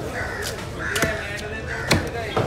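Crows cawing repeatedly nearby while a heavy knife chops into a whole tuna on a chopping block. There are three sharp strikes, the last and loudest near the end.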